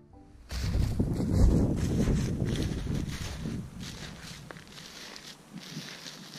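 Footsteps crunching on snow-covered field stubble at a steady walking pace, with wind rumbling on the microphone, loudest in the first couple of seconds and then easing.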